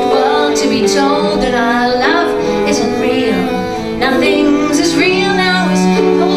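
A two-step song played live on grand piano and cello, with a woman singing over held cello and piano notes.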